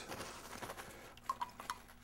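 A few faint, short ticks of a stirring stick against a glass tumbler, a little over a second in, over quiet room tone.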